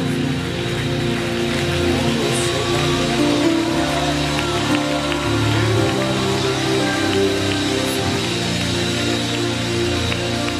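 Slow live worship music: sustained chords held for a couple of seconds each, moving from chord to chord under a steady soft wash.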